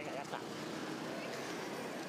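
Low, steady city-street background of road traffic noise, with faint voices of people nearby.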